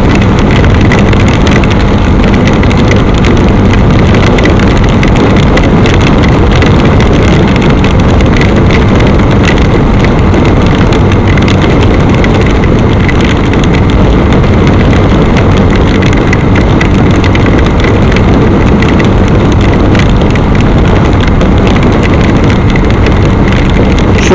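Steady loud rush of wind and rain on the microphone of a motorcycle riding at speed in a downpour, with the engine's even hum underneath.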